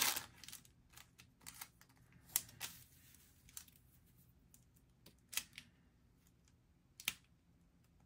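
Paper and wax paper being handled while stickers are placed: a short crinkle at the start, then scattered light ticks and taps as the sheets are touched and pressed down.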